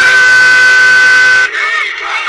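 A loud, steady horn blast held on one note for about a second and a half, cutting off abruptly, followed by a crowd of people shouting.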